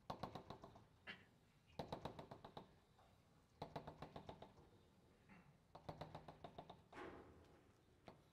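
Chalk on a blackboard drawing a row of coil turns. It comes as about five short runs of rapid tapping clicks, each under a second, with brief pauses between them.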